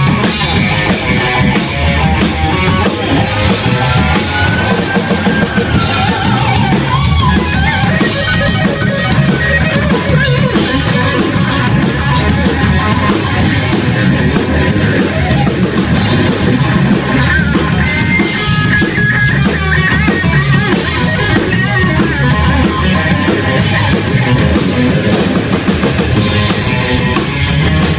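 A hard rock band playing live and loud: distorted electric guitar through a KSR Ares amp head, over a rock drum kit with busy cymbals.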